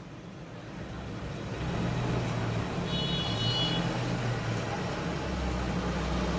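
Motor vehicle engine in the background, its rumble growing louder about a second and a half in and staying steady, with a short high tone near the middle.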